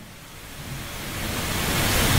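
A steady, even hiss that swells gradually in level over about two seconds.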